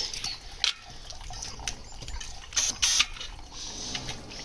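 Hands handling a bicycle tyre on its wheel rim, rubber rubbing and brushing under the fingers, with a few short scrapes, two of them close together about three seconds in.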